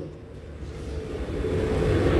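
A low rumble that grows steadily louder through the two seconds, with a faint steady tone joining it in the second half.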